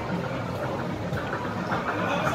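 Outdoor background noise of a busy amusement park, with faint distant voices rising in the second half.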